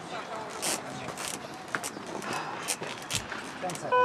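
Indistinct voices and murmur at a ski race start gate. Near the end comes a short, loud electronic beep from the start gate's timing system.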